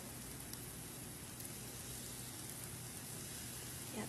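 Egg and pancake batter sizzling steadily in a frying pan over medium heat.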